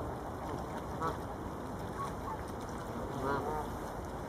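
Canada geese honking: a short honk about a second in, a couple of soft notes around two seconds, and a louder honk a little past three seconds, over a steady low rush of background noise.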